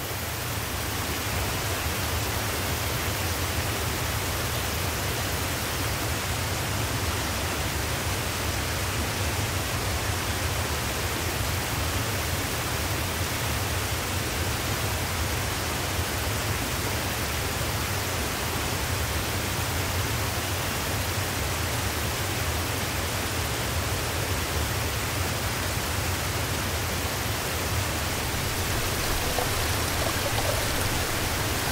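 Steady rushing of running water from a small creek cascading over rocks, swelling up at the start and then holding even.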